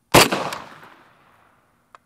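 A single rifle shot from an M1 Carbine firing a .30 Carbine round: one sharp, loud report just after the start, with an echo trailing off over about a second. A fainter crack follows about half a second in.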